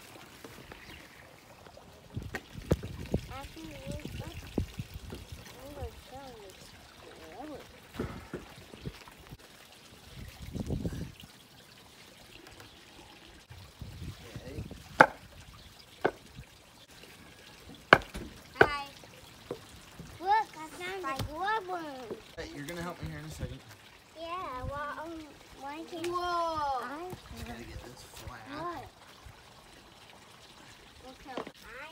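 Thumps and knocks of a log post being packed into its hole with broken concrete, including two sharp knocks about halfway through, over steady trickling water from a small pond. High voices come in near the end.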